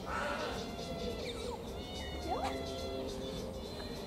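Otters calling at the glass: cries that slide up and down in pitch, one a little after a second in and another just past two seconds.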